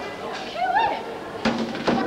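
Voices in a large, echoing hall, with a short rising vocal exclamation about halfway through. Two sharp clicks come near the end, the second at a cut in the recording.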